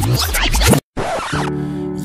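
Scratchy, stuttering rewind-like transition effect, cut by a sudden brief drop-out just under a second in, followed by a short hiss and the held opening notes of a song's intro.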